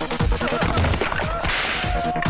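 Film fight-scene sound effects: several sharp, whip-like hits and a whoosh about one and a half seconds in, over action background music with a steady pounding beat.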